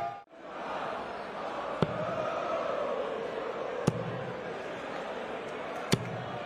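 Three darts striking a bristle dartboard, one sharp hit about every two seconds, over the steady murmur of a large arena crowd.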